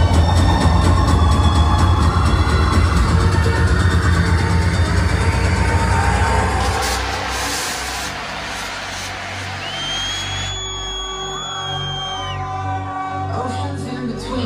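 Electronic dance music played loud by a DJ through a club sound system: a heavy bass-and-kick groove under a rising sweep builds for about six seconds, then the bass drops out into a quieter breakdown with a swell of noise and a long high sliding tone.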